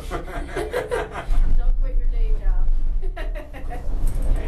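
A woman singing and chuckling. About a second in, a loud, steady low rumble comes in under her voice.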